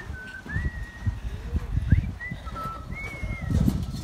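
Birds calling outdoors: several short, clear whistled notes that step between a few pitches, over a gusty low rumble of wind on the phone's microphone.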